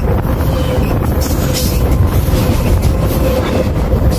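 A train rolling directly over a microphone lying between the rails: loud, steady rumble of the wheels and cars passing overhead, with a steady ringing tone running through it.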